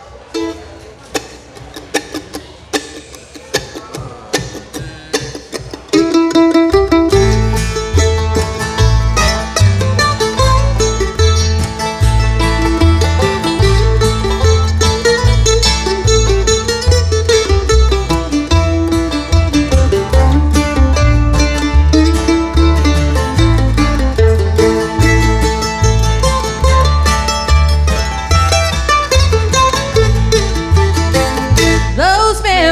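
Bluegrass band playing an instrumental intro. For about the first six seconds there are only quieter, sparse picked notes. Then mandolin, acoustic guitar, banjo and upright bass all come in together, with a steady, even bass beat.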